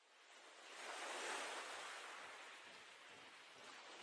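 Faint, even rushing noise that fades in from silence, swells about a second in, then settles to a steady lower level.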